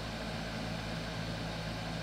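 Steady low hum with an even hiss: the background noise of the recording between phrases of speech.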